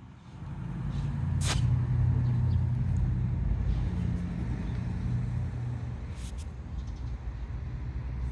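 Low engine rumble of a motor vehicle, swelling in at the start and holding steady, with one brief high sound about a second and a half in.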